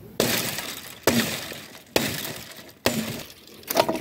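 Five heavy strikes of a long-handled mattock into stony ground strewn with dry branches, about one a second, each a sharp crack followed by a short crunching, scattering rattle.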